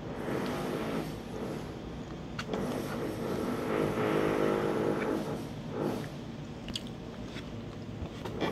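Close-miked eating sounds: chewing a mouthful of pasta, with a metal spoon clicking and scraping against a plastic takeaway container a couple of times. Under it runs a droning sound that swells and fades, loudest around the middle.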